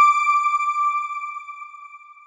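A news channel's ident sound logo: a single high, pure chime note that starts abruptly, then rings on and slowly fades away.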